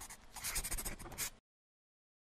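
Scratchy scribbling sound effect, like a pen being scrawled rapidly across paper, with many quick strokes. It stops suddenly about a second and a half in.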